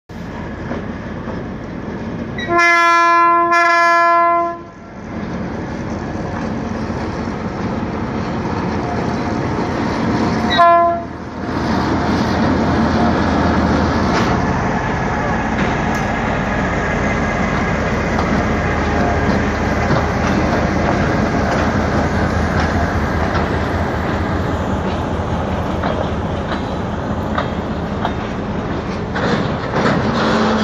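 Diesel freight locomotive sounding its horn: two long blasts back to back about three seconds in, then a short blast around eleven seconds, over the steady running of its engine. The locomotive then passes close by and a long train of empty freight wagons rolls past with a steady rumble.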